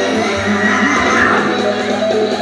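Live rock band playing, led by electric guitar with bent, wavering high notes.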